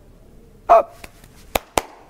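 A man's sudden loud 'Oh!', then two sharp smacks about a quarter of a second apart.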